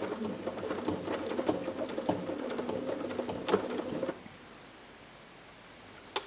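A sewing machine runs steadily, stitching free-motion embroidery with its feed dogs lowered. It gives a steady hum with fast, light needle ticks, then stops about four seconds in.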